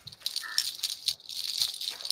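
Close-up crinkly rustling and light rattling as something is handled right at the microphone, a run of many small crackles, heard as ASMR-like.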